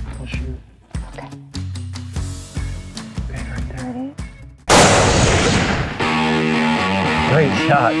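A single rifle shot about halfway through: a sudden loud crack with a long decaying tail. Before it, quiet whispering over soft background music; about a second after it, loud electric guitar music comes in.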